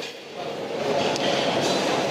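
Background hubbub of a large hall: a steady wash of noise with faint, indistinct voices.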